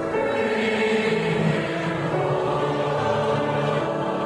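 Mixed high school choir of male and female voices singing together in harmony, holding long sustained notes.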